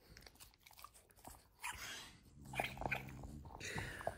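French bulldog snuffling and mouthing rubber balls, with small clicks and crunches of teeth on rubber and a low drawn-out sound about two and a half seconds in.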